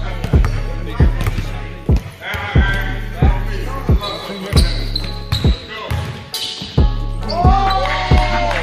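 A basketball bouncing repeatedly on a wooden gym floor, about one or two bounces a second, with sneakers squeaking near the end. Background music with a steady bass line runs underneath.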